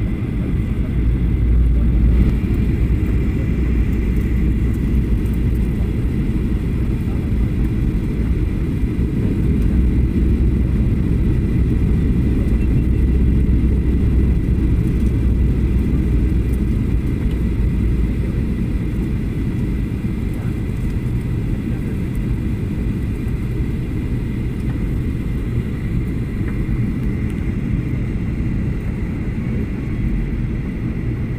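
Steady low rumble of engine and airflow noise inside a jet airliner's cabin on its descent, with a faint steady whine above it. It eases slightly in the second half.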